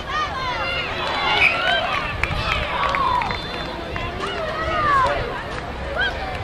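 Several voices shouting and calling over one another during youth rugby play, from young players and spectators on the touchline.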